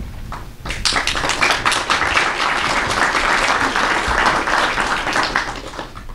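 Audience applauding with many hands clapping together; it swells in about a second in, holds, then dies away near the end.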